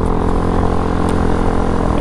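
Small fuel-injected motorbike engine running at a steady cruising speed, with wind rushing over the microphone.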